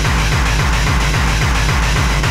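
Hardcore techno (gabber) track: a fast, steady kick-drum beat repeating at even spacing, with a dense noisy layer above it.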